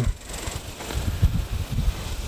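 Wind buffeting the microphone: uneven low rumbling gusts.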